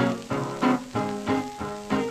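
Old blues 78 rpm record playing on a turntable: an instrumental passage between sung lines, with evenly spaced chord beats about three a second.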